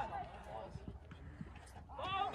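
Football players shouting on the pitch at the start and again near the end, with faint thuds of running feet and kicks on the artificial turf in between.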